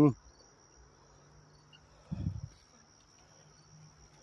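Crickets chirring outdoors as one thin, steady high-pitched tone, with a single short low bump about two seconds in.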